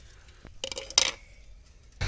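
A few short clinks and scrapes of a stick being worked through the embers and ash of a wood-fired chulha where potatoes are roasting, the loudest about a second in.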